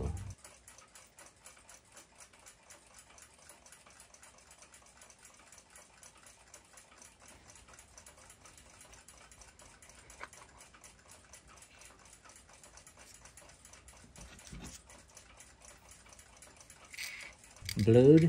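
Faint handling of small clock parts in a metal tin: light clicks and rustles, with one sharper click about ten seconds in and a soft thump near the end.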